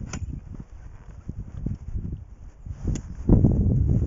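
Water splashing and sloshing as a hooked northern pike thrashes at the side of the boat and is netted, with a couple of sharp clicks and a louder low rush in the last second.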